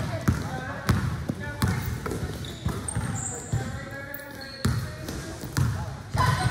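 Basketball being dribbled and bouncing on a hardwood-style gym floor, sharp bounces about once a second ringing in the hall.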